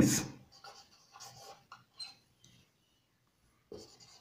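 Marker pen writing on a whiteboard: faint, short scratchy strokes over the first couple of seconds, then a pause.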